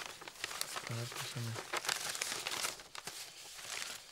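Paper rustling and crinkling in irregular bursts as old letters and envelopes are handled and unfolded.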